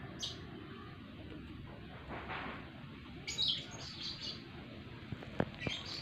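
Small birds chirping: short high chirps, with a quick cluster of them about three seconds in and a few more near the end, over a low steady outdoor background. Two light clicks near the end.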